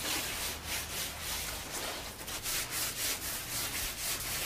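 Gloved hands rubbing sea salt over a raw leg of pork in the salting stage of ham curing: a gritty scraping in short, uneven strokes, several a second.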